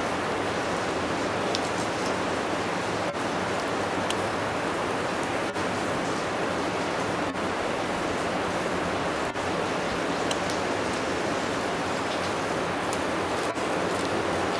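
Steady, even rushing noise outdoors, with a few faint, very short high ticks.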